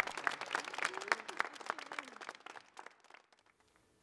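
Applause from a small crowd clapping by hand: a dense run of claps that thins out and dies away about three seconds in.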